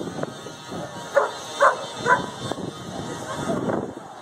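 A dog barking three times in quick succession, about half a second apart, over the chatter of people talking.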